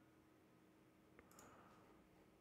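Near silence: faint room tone with a low steady hum, and one faint click a little after a second in, followed by a brief soft rustle.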